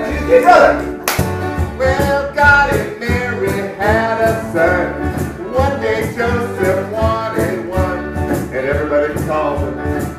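Live acoustic band playing: strummed acoustic guitars and bass guitar with a steady beat, and voices singing along. A sharp hit sounds about a second in.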